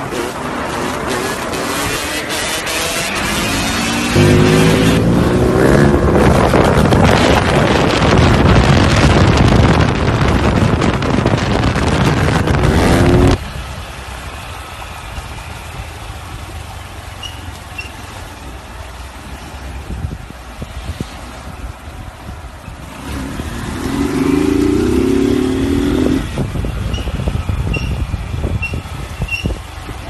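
Motorcycle engines during wheelies: a dirt bike engine revs loudly, its pitch climbing in steps, then cuts off suddenly about 13 s in. A quieter street motorcycle follows, its engine revving up briefly near the end.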